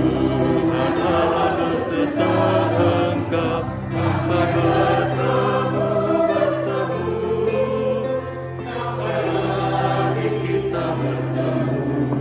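Voices singing a hymn together in Indonesian over instrumental accompaniment that holds long, steady low notes.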